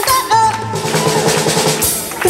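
Live band playing, with the drum kit to the fore in a quick run of snare and bass drum hits, held pitched notes above, and a bass note that comes in about a third of a second in.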